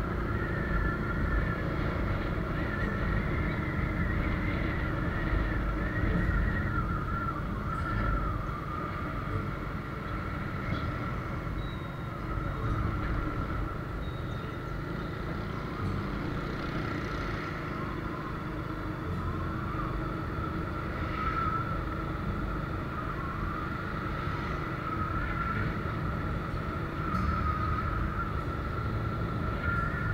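Steady rumble of a vehicle riding along a street, with a steady mid-pitched whine over it.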